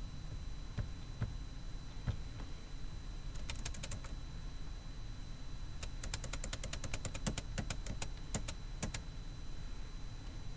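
Computer keyboard typing: a short run of keystrokes about three and a half seconds in, then a longer run from about six to nine seconds, with a few single clicks before them. A low steady hum sits underneath.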